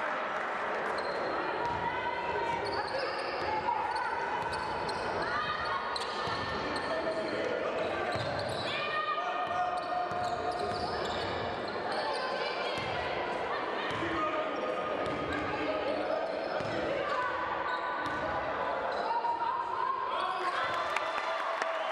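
Basketball game sounds in a large sports hall: a ball bouncing on the hardwood floor in repeated thuds, with players' voices calling out over it.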